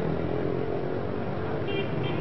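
Busy street traffic: a steady din of many motorbike and scooter engines running together.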